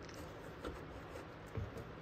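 Faint handling noise as the plastic ECM bracket is wiggled and pulled up off its mount, with two soft knocks.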